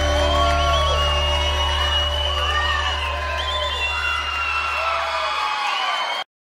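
The last chord of a sertanejo song ringing out, its low note held and fading away near the end, while a live crowd cheers and whoops over it.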